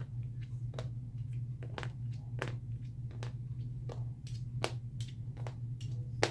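Small wooden pegs being pulled one by one from a wooden pegboard and dropped onto a padded table: a quick, irregular string of light clicks and taps, about two or three a second. A steady low hum runs underneath.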